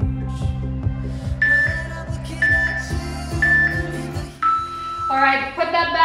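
Background workout music with a steady beat, over which an interval timer gives three short high beeps a second apart, then one longer, lower beep: the countdown to the end of the exercise interval. A woman's voice comes in near the end.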